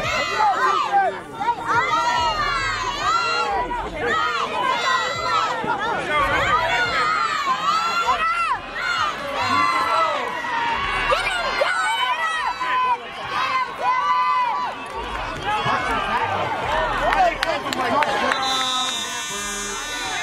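Sideline spectators at a youth football game shouting and cheering during a play, many high voices overlapping, with no words standing out. Near the end a steady buzzing tone with several pitches sounds for about two seconds.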